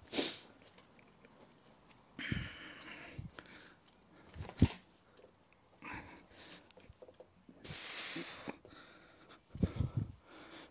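A manual wheelchair being pushed into a garage: a sharp knock about four and a half seconds in, with a few short sniffs and breaths around it.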